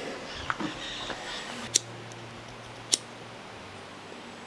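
Two short, sharp clicks about a second apart, over a faint low hum.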